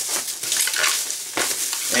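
Clear plastic packing wrap crinkling and rustling as it is handled and pulled off a package, with a couple of sharper crackles.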